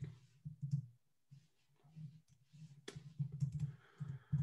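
Keys and clicks on a computer keyboard and mouse: irregular runs of light tapping while code is selected and deleted in an editor, busiest towards the end.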